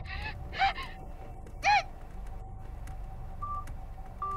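Two short, high-pitched sounds that rise and fall in pitch, about half a second and a second and a half in, then a brief steady electronic phone beep near the end, as of a call being cut off. A low hum sits underneath throughout.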